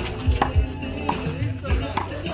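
Sharp smacks of a handball rally, the ball slapped by hand and striking the concrete wall and court, three times about two-thirds of a second apart. Background music with a heavy bass beat plays throughout.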